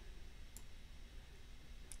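Two faint computer mouse clicks, one about half a second in and one near the end, over quiet room tone.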